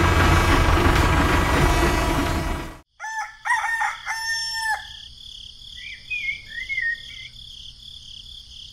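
A loud, steady, rumbling mechanical noise cuts off abruptly about three seconds in. A rooster then crows, followed by a few high bird chirps over a steady high-pitched insect-like buzz.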